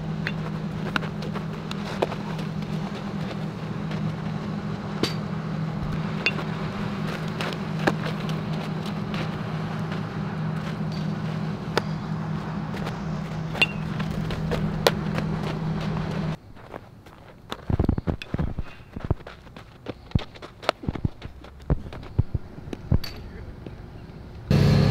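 Outdoor field sound with a steady low hum and scattered clicks. After an abrupt change about 16 seconds in, it turns quieter, with a run of irregular sharp knocks and taps.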